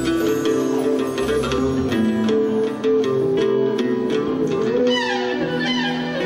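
Turkish art music ensemble playing an instrumental passage in makam Kürdi, with plucked strings such as the oud carrying the melody. A quick descending run comes about five seconds in.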